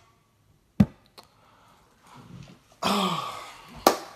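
A single sharp knock about a second in, the loudest sound, followed by a lighter click. Near three seconds comes a short breathy vocal exhale with a slight falling pitch, and another sharp click comes just before the end.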